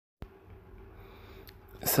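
A click as the recording starts, then faint steady room hum, and near the end a short, sharp intake of breath just before a man starts speaking.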